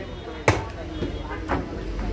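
Sharp knocks, about one a second, with people talking in the background.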